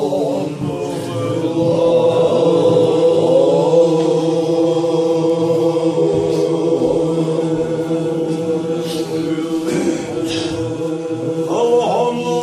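Group of men chanting a Chechen zikr together, their voices held in long sustained lines that shift slowly in pitch.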